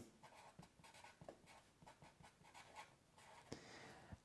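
Faint, scratchy strokes of a Sharpie felt-tip marker writing a word letter by letter, a run of short irregular strokes.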